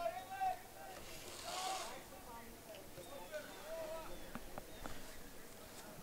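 Players' voices calling out faintly across a soccer field, several short shouts, with two sharp knocks about four and five seconds in.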